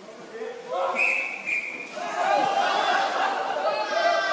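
Voices of a group of people, with a brief high steady tone lasting about a second, starting about a second in, before louder overlapping voices.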